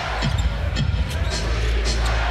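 Basketball being dribbled on a hardwood court: a few low bounces over steady arena crowd noise.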